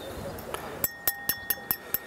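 Metal fork tines clicking repeatedly against a wine glass, about five clicks a second from about a second in, the glass ringing with a steady tone after each.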